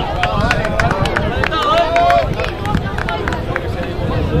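Rugby players shouting calls to each other across the pitch, with a scatter of sharp clicks and a steady low rumble underneath.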